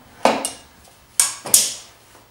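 Three sharp metallic clacks with short ringing tails, the second and third close together near the end: a steel tape measure being retracted and set down on the table saw's metal top.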